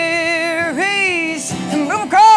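Live acoustic country-folk song: a male voice holds a long sung note over two strummed acoustic guitars, then sings a second, shorter note that dips and rises in pitch. The guitars carry on more quietly near the end.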